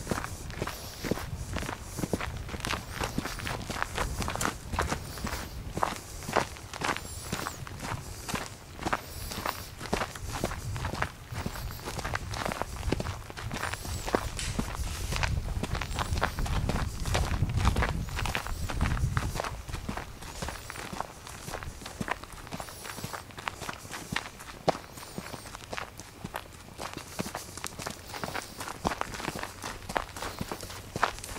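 Footsteps of people walking on a dry dirt trail scattered with leaves, a steady stream of short scuffs and crunches, with a low rumble swelling about halfway through.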